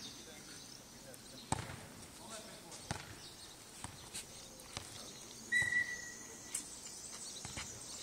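A football being played in a futnet rally on a clay court: a few sharp thuds of the ball being kicked and bouncing, spaced one to two seconds apart, the strongest about a second and a half in. Just past halfway comes a short, steady, whistle-like high tone, the loudest sound.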